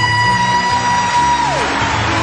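A singer holds one long, high falsetto note that swoops up at the start and falls away about a second and a half in. It sits over the band's live pop-rock accompaniment.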